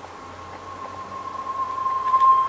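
Background music fading in: one held high note swells steadily louder over a faint hiss.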